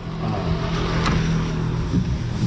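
Motorcycle engine of a Philippine tricycle (motorcycle with sidecar) running, a steady low drone with road and wind noise as the loaded tricycle gets under way.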